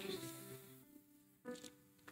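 Very faint held notes of soft background music that fade out within the first half second, leaving near silence with a brief faint sound about one and a half seconds in.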